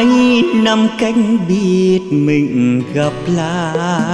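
Vietnamese bolero song: a man sings a slow melodic line over the band accompaniment, holding a note with a wide vibrato near the end.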